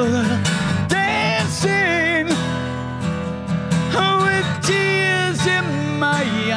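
Acoustic guitar strummed steadily under a man singing two long held notes with vibrato, about a second in and again about four seconds in.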